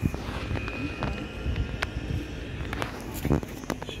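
Background murmur of voices and room noise in a large exhibition hall, with handheld-camera rumble and a few light clicks; a short sharp knock about three seconds in is the loudest sound.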